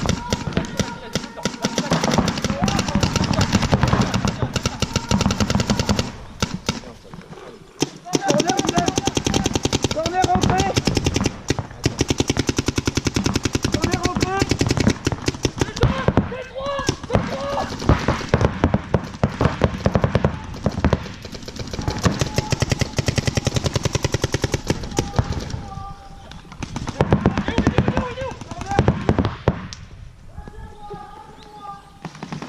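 Paintball markers firing long rapid strings of shots, nearly without pause, easing off around six to eight seconds in.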